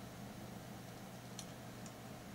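Quiet room tone with a low steady hum, and two faint light ticks near the end as thin nichrome wire is handled around a metal peg.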